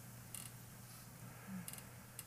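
Faint room tone with a steady low hum, broken by a couple of soft, brief clicks.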